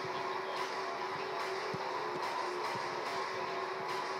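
Steady ambient noise of a football stadium picked up in a commentary booth: an even hiss with a faint steady hum.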